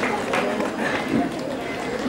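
Audience applause dying away into scattered claps in the first half second, with voices murmuring.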